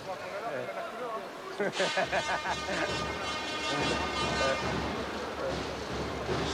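Muffled voices and arena crowd noise picked up by the referee's chest-worn microphone during a ceremonial tip-off. A steady high buzzing tone comes in at about two seconds and lasts about three seconds.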